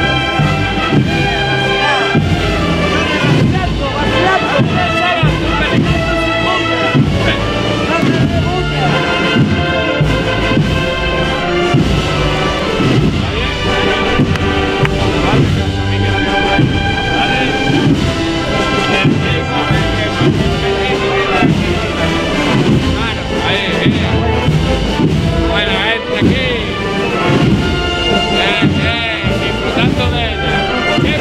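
A Spanish brass and woodwind band (banda de música) playing a slow processional march, with sustained chords over bass drum strokes.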